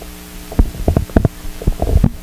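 Handling noise of a handheld microphone: a run of irregular low thumps and knocks as the microphone is moved and gripped, starting about half a second in.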